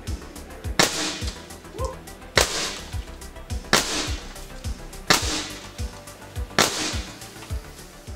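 Five shots from a shrouded Air Arms S510 XS Tactical .22 pre-charged pneumatic air rifle, evenly spaced about a second and a half apart, each a sharp crack with a short ring after it. Background music with a steady beat runs underneath.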